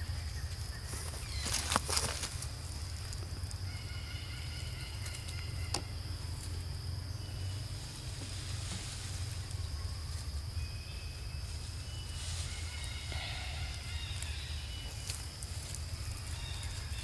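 Outdoor ambience: a steady high hum and low rumble, with a rustling burst about two seconds in and several short, high-pitched animal calls scattered through.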